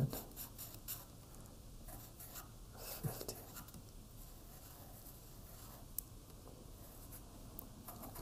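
Felt-tip marker writing on a sticky note, picked up close: short, scratchy strokes with pauses between them, and a sharp click about six seconds in.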